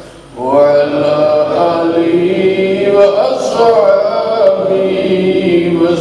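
A man chanting in Arabic in a melodic, sustained devotional style, holding long wavering notes. There is a brief breath pause at the very start before the chant resumes.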